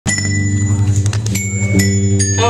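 A live indie rock band playing: low notes are held underneath, and several bright, bell-like glockenspiel notes are struck and ring over them.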